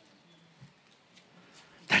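Near silence: faint room tone during a pause in speech, with a man's voice starting again just before the end.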